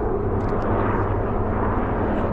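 Helicopter flying nearby: a steady, continuous drone of rotor and turbine engine noise with a low hum underneath.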